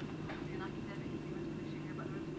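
Faint murmur of audience voices over a steady low hum.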